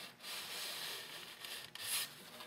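Balsa wood rubbing against balsa: a model airplane's wing being shifted against the fuselage, a steady dry scrape with a brief louder scrape near the end.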